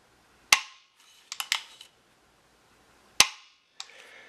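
AR-15 trigger group in a bare lower receiver being worked through a function check: two sharp metallic clicks, one about half a second in and one about three seconds in, with lighter clicks between them as the hammer is cocked and the trigger is released. These are the hammer and trigger catching and resetting, the clunk that shows the trigger resetting properly.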